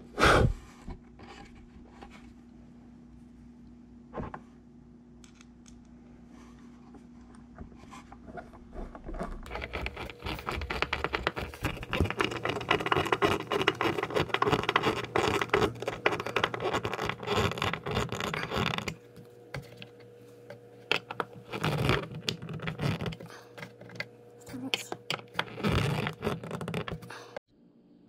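A screw being driven by hand with a long screwdriver through a metal tabletop fastener into an oak top, giving a dense run of rasping, scraping clicks for about ten seconds mid-way, with a few shorter bursts later. A single sharp knock comes right at the start.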